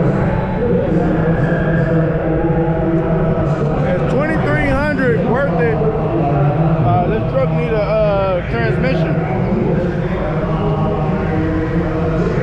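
Auctioneer's rapid, continuous bid-calling chant, with a man's voice talking over it in the middle.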